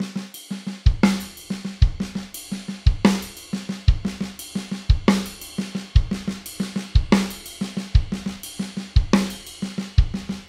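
Tama Star Bubinga drum kit playing a slow linear triplet groove, only one drum or cymbal sounding at a time: snare strokes and hi-hat strikes, with a bass drum beat about once a second as the loudest hits.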